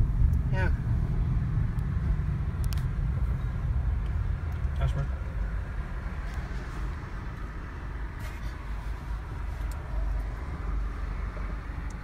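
Low, steady rumble of a car heard from inside its cabin while driving, easing a little about halfway through.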